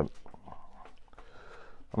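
A cloth rubbing over the headstock and tuners of a small Stagg acoustic guitar as it is wiped clean with lighter fluid: a faint, soft rubbing with a few light ticks.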